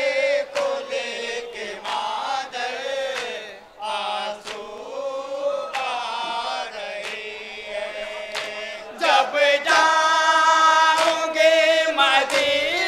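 A group of men chanting a noha (Shia mourning lament) together, with regular sharp hand strikes of matam (chest-beating) keeping time. The chanting grows louder and fuller about nine seconds in.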